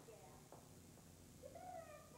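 Faint, distant voices of actors speaking on stage, picked up by a camcorder in the audience, over a low steady hum.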